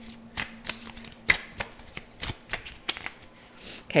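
Tarot cards shuffled and handled by hand: a quick, irregular run of card flicks and slaps.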